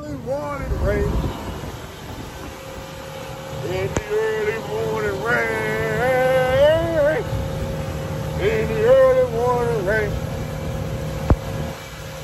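A man sings an Army marching cadence in long held, wavering notes over the steady drone of a 200-horsepower outboard motor running the boat at speed. There is a single sharp tap near the end.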